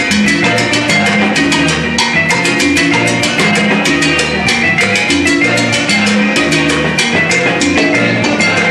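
Salsa band playing live, with a steady, dense percussion rhythm of drum strikes several times a second over a bass line.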